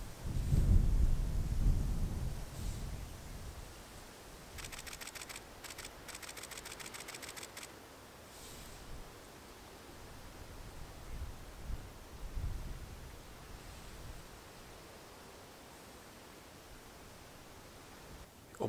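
A camera shutter firing in a rapid burst of evenly spaced clicks for about three seconds, with a brief break partway through. Before it, a louder low rumble fills the first few seconds.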